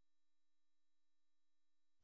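Near silence, with only a very faint steady tone underneath.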